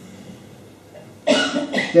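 A man coughing twice in quick succession, a little over a second in.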